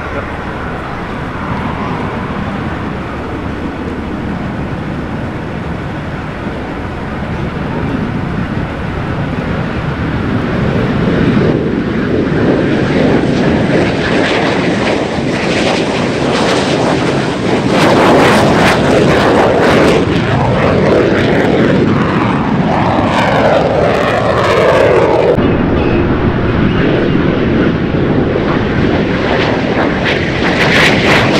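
US Navy F-5N Tiger II fighters, each powered by twin J85 turbojets, running at takeoff power on their takeoff roll. The jet roar builds through the first half and is loudest near the middle, where a falling whine sweeps down several times as the jets pass close by.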